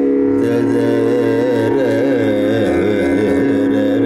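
Carnatic vocal singing, a male voice sliding and oscillating through ornamented pitch bends over a steady drone.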